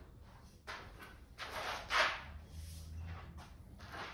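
Shoes scuffing on a concrete floor as a person steps sideways: a few short scrapes, the loudest about halfway through.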